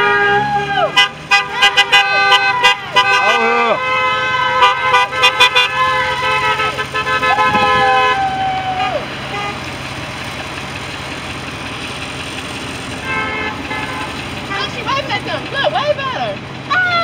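Several car horns honking in long, overlapping blasts from passing traffic, with shouting voices over them, for the first half. Then a steady engine hum and road noise of passing cars, with a few short horn toots a little before the end.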